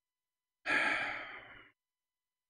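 A man sighing once into the microphone: a breathy exhale about a second long that starts sharply and fades away.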